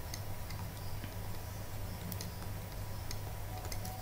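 Faint, irregular clicks and taps of a stylus writing on a pen tablet, more of them near the end, over a steady low electrical hum.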